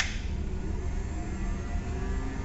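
A Van de Graaff generator switched on with a sharp click, then its belt-drive motor running with a steady hum and a faint whine.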